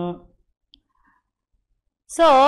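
A woman's spoken word trailing off, then a pause of near silence broken by one faint short click.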